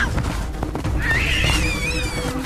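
Background music with a steady low beat, joined about a second in by a gelada's single high, wavering call that slowly falls in pitch and lasts about a second.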